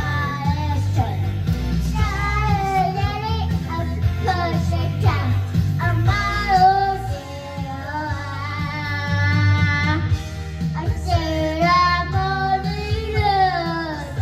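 A toddler singing into a handheld microphone over backing music, drawing out some long, wavering notes, one held for a couple of seconds.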